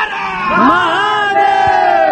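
A crowd of worshippers shouting a long devotional cry together, many voices held and then falling in pitch.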